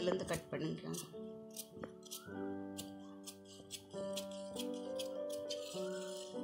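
Tailoring scissors snipping through cotton blouse cloth along chalk lines, a run of short sharp cuts about two a second. Soft piano background music plays underneath.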